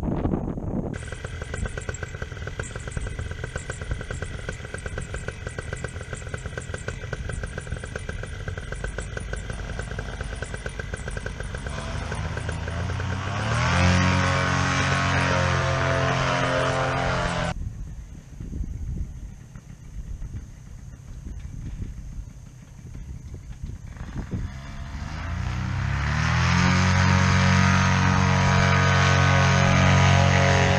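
Paramotor engine running, climbing twice to high power with a rising pitch. The first run at high power stops suddenly about two-thirds of the way in; the second builds up again near the end and holds.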